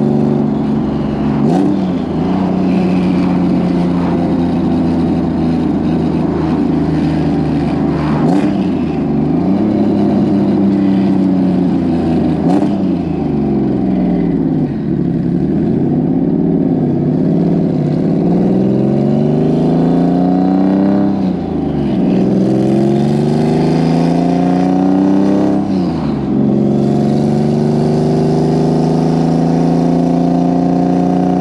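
Subaru's turbocharged flat-four engine heard from inside the cabin, revs climbing and falling back again and again while held under about 4,500 rpm during break-in of a new engine. Several short breaks in the pitch come between the climbs.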